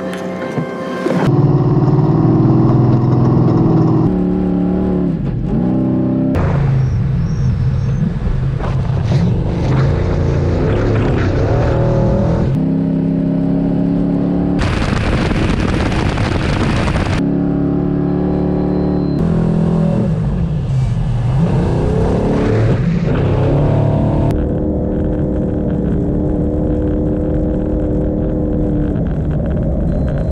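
Rally-raid car engine heard from on board, running hard and revving up and down over sand, in a string of short clips that cut abruptly every few seconds.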